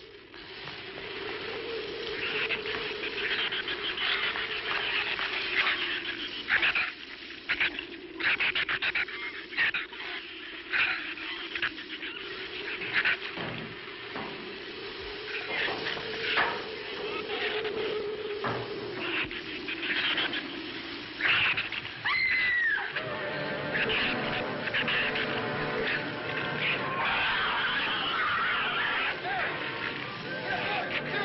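Film soundtrack: a steady, wavering howl of storm wind with scattered sharp knocks and animal squeals, including one falling shriek about two-thirds of the way through. Music comes in for the last part.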